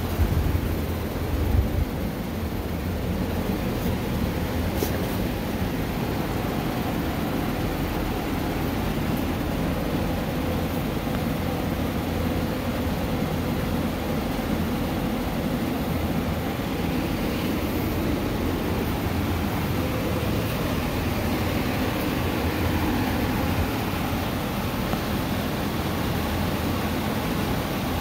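Steady whirring of a greenhouse air-circulation fan with a faint hum, heavy in the low end.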